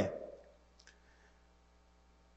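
A man's drawn-out hesitation sound fading out over the first half second, then a pause near silence with one faint, brief click just under a second in.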